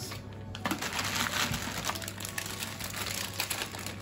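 Paper leaflets and a thin plastic bag rustling and crinkling as they are handled, with many small crackles.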